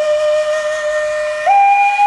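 Native American style flute playing a slow melody: one long held note that steps up to a higher note about one and a half seconds in.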